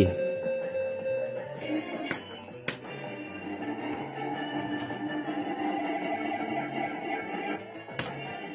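Fruit King 3 fruit slot machine playing its electronic jingle while its lights chase around the board during a spin. Two sharp clicks come a couple of seconds in.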